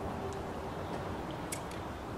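A few light metallic clicks as a main bearing shell is worked out of its saddle in a bare Ford 460 big-block, several of them close together about a second and a half in.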